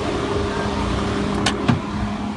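Motor vehicle engine running steadily with an even hum, and two short sharp clicks near the end.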